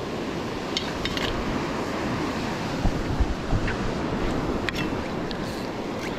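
Waves breaking on the beach, with wind buffeting the microphone and a few light clicks scattered through.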